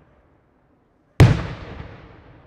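A single loud aerial shell burst from a daytime fireworks display: a sharp bang a little over a second in, followed by a rumbling echo that dies away.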